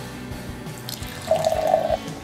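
Cola poured from a can into a glass, running and foaming, beginning about a second and a half in.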